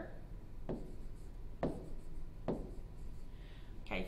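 A stylus writing on a tablet screen: three sharp taps about a second apart, with faint strokes between them.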